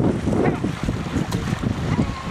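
Wind buffeting the microphone over water churning and splashing as a herd of long-horned cattle swims across a river.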